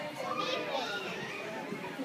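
Faint voices of several young children talking and playing, with no clear singing.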